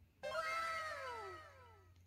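A single long meow-like call that starts suddenly and slides down in pitch over about a second and a half, then fades.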